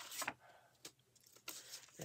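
Faint rustling of a plastic adhesive stencil transfer sheet being lifted and slid by hand, strongest at the start, followed by a couple of light ticks.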